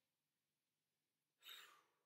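Near silence, then about a second and a half in, one short, faint breath from a woman doing bicycle crunches.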